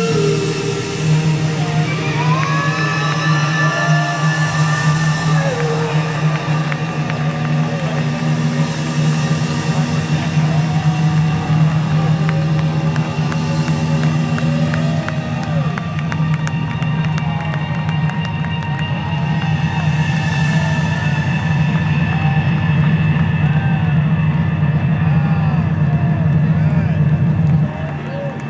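A live rock band holds a sustained low closing chord that rings on steadily, while a crowd cheers, whoops and claps over it.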